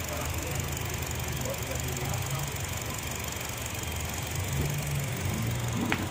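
Honda Jazz GE8's four-cylinder petrol engine idling steadily, a low even hum.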